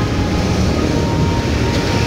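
A steady, loud low rumble with no breaks, carrying a faint held tone.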